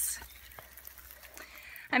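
Faint watery noise of a flooded, muddy trail in rain, with a brief splashy hiss at the start.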